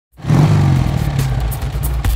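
A motorcycle engine revs, starting suddenly and easing off over about a second and a half, mixed with the opening music.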